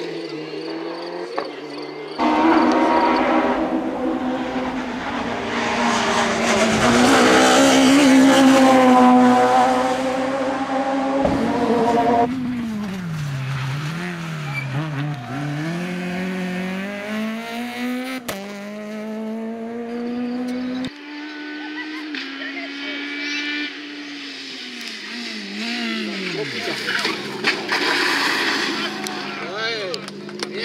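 Rally car engines at full stage pace, one car after another. Each engine revs up and drops back through gear changes and braking for corners, with some tyre squeal; the sound changes abruptly at each cut, about 2, 12 and 21 seconds in.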